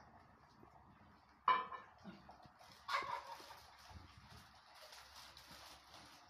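A dog barks twice, each bark short and sudden: once about one and a half seconds in and again about three seconds in.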